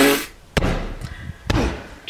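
Two sharp thumps about a second apart, a hand striking a duvet-covered bed, after a short exclaimed 'oh'.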